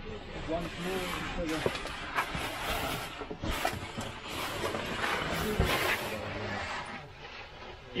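Scraping, rustling and knocks of cavers' oversuits, boots and hands against rock while climbing down a narrow rift, with a few indistinct voices.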